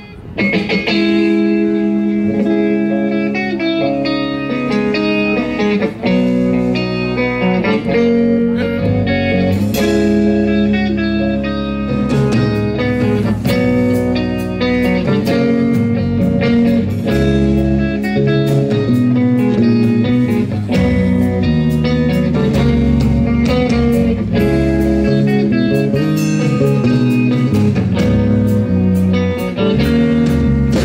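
Live rock band playing an instrumental intro on electric guitars and bass guitar, with no singing. The drums come in fully about a third of the way through.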